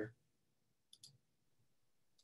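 Near silence broken by two faint, quick clicks about a second in: a computer mouse being clicked to unmute a participant in the meeting software.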